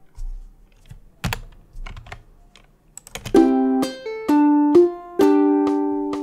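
Several computer keyboard keystrokes, then about a second later a short phrase of plucked ukulele notes starting on a chord, played back from Guitar Pro tab software; the last note rings on.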